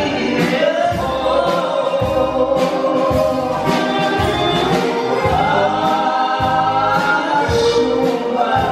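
Live band playing a song: singing over guitars and keyboard, with a regular drum beat.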